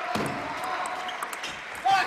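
Table tennis ball making several sharp clicks as it bounces and is struck, with voices in a large hall; a louder burst of voice comes near the end.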